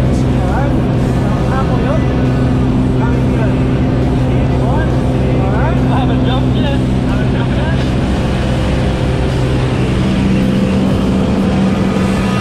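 Single-engine propeller plane droning steadily inside its cabin, with voices talking over the engine noise.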